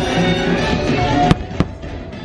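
Aerial fireworks bursting over show music: two sharp bangs a little past the middle, about a third of a second apart.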